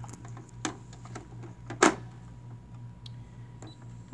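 Clicks and small knocks from hands handling a Brother PE770 embroidery machine, with one sharp knock about two seconds in, over a steady low hum.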